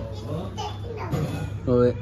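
Speech only: a young child talks and babbles faintly in a small room, and a louder voice starts near the end.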